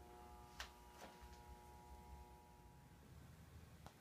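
Near silence: faint room tone with a low steady hum that fades out near the end, and a few light clicks in the first second and a half.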